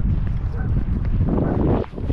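Wind buffeting the microphone: a steady low rumble that dips briefly near the end.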